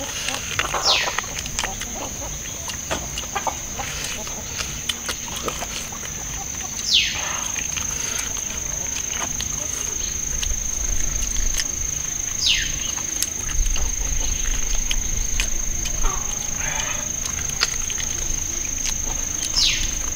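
Two people gnawing and chewing stewed yak ribs by hand, with many small wet clicks and smacks of mouth and bone. Behind it a steady high drone runs throughout, and a call falling sharply in pitch repeats four times, about every six seconds.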